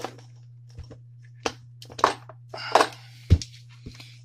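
Handling noise on a workbench: scattered clicks and knocks as a tool battery pack is moved into place, the loudest a heavier thump about three seconds in, over a steady low hum.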